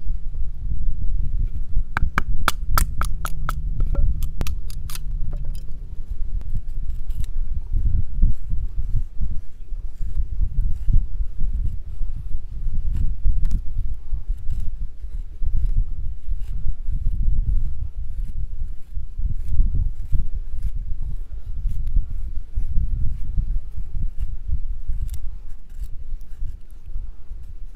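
A knife blade carving wooden sticks into feather sticks: a run of sharp knife clicks about two to five seconds in, then steady fainter scraping strokes as curls are shaved off. A heavy low wind rumble on the microphone runs underneath.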